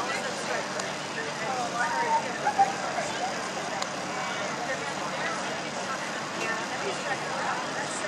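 Indistinct chatter of many spectators' voices over a steady outdoor background noise, with one brief sharp tap about two and a half seconds in.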